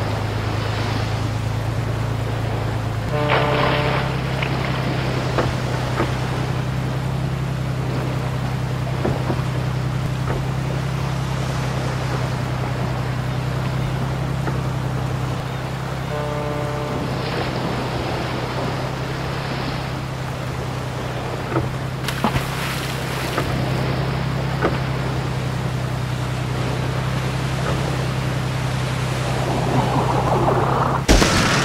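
Steady low drone of a large ship's engine under a continuous wash of sea water, with two short pitched tones, one about three seconds in and one about sixteen seconds in.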